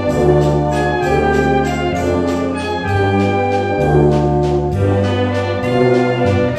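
Live wind band of brass, woodwinds, tubas and percussion playing an arrangement of German TV theme tunes, with a steady beat and bass notes changing about once a second.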